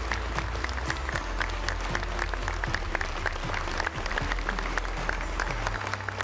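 Large crowd applauding steadily after a speech ends, with music playing underneath.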